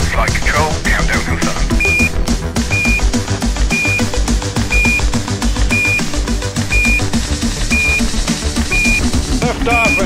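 Background music with a steady beat, overlaid by a short, high electronic beep repeating about once a second: a countdown timer ticking off the seconds.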